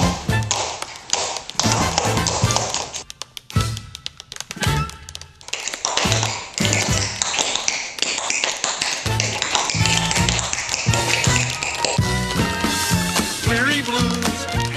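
Tap-shoe taps clicking in a rhythmic tap-dance break over a swing-style band. About three seconds in the band drops away for a couple of seconds, leaving the taps nearly alone, then the full band comes back in under them.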